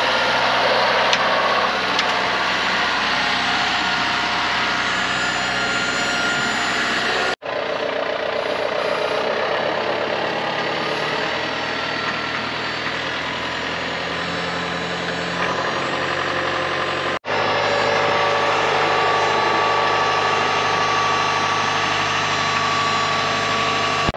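John Deere tractor's diesel engine running steadily while it pulls a carrot-lifting blade through straw-covered beds. The sound breaks off sharply twice, at cuts between shots.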